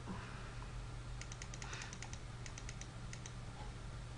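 Computer keyboard typing in two short quick runs of key clicks, a little after a second in and again around three seconds, over a low steady hum.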